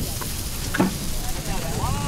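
Steady hiss of a pot of broth simmering over a clay charcoal stove, with two light clicks in the first second.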